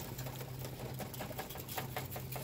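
A steady low hum with a dense run of small, irregular clicks and rattles over it.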